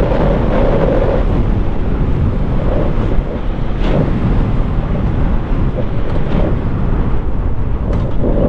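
Heavy wind rush over the microphone of a motorcycle at highway speed, with the Yamaha MT-15's single-cylinder engine running steadily underneath.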